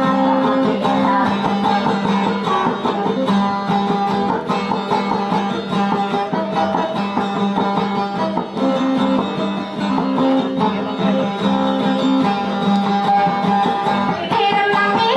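Instrumental passage of dayunday music led by a plucked guitar, with held notes over a steady low accompaniment and no singing.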